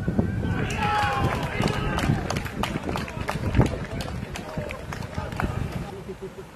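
Football players shouting to each other on the pitch during play, mixed with sharp thuds and knocks, the loudest a little past halfway, over a low wind rumble on the microphone.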